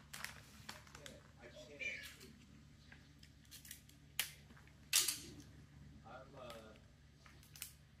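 Present being gift-wrapped by hand with paper, scissors and sticky tape: a series of sharp snips and clicks, the loudest about five seconds in. Faint voices sound in the background.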